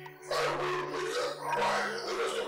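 A man's deep guttural growling vocalisation, starting a moment in, breaking briefly about halfway, then going on, over a steady low musical drone.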